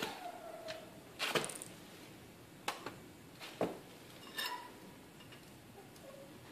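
Scattered metal clanks and knocks, some with a brief ring, as the metal lid of a small stove-burner aluminium melting furnace is lifted off and set down and tongs are picked up. About half a dozen separate knocks, the loudest about a second in.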